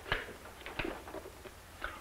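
A few small clicks and light knocks as a case is handled and opened, over the steady hiss and hum of an old optical film soundtrack.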